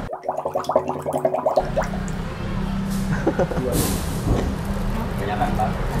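Quiet indistinct voices and laughter over a steady low hum, ending in a laugh.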